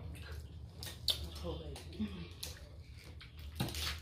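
Eating a seafood boil by hand: scattered wet clicks and snaps of crab shells and seafood being picked apart, with finger-licking and mouth noises. A voice murmurs faintly partway through.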